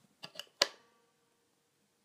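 Three quick percussive clicks from muted electric guitar strings, about a third of a second apart. The third is the loudest and rings briefly.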